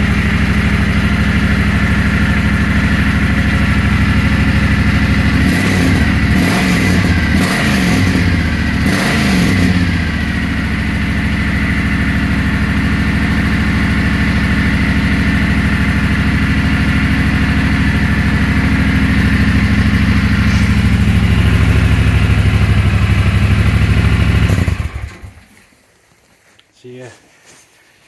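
Triumph Thunderbird Storm's parallel-twin engine idling on its standard exhaust at a cold first start, with a few quick throttle blips between about six and ten seconds in, then switched off suddenly near the end.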